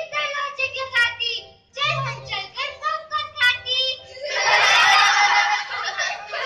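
Children's voices speaking, then about four seconds in a loud burst of crowd noise lasting over a second.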